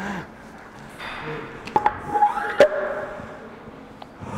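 Weight plates clanking onto a barbell: a few sharp metal knocks, each followed by a brief ringing tone, the loudest a little over two and a half seconds in.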